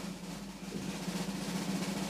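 Snare drum roll building slowly in loudness: a suspense sound effect ahead of a reveal.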